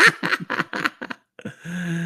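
A man laughing in quick, short pulses, trailing off into a steady held voice note near the end.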